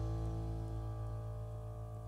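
A live band's final chord held and slowly fading away after the singing has stopped.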